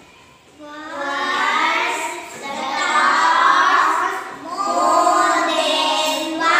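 Young girls singing a song together, starting a little under a second in and going in three long phrases with short breaks between them.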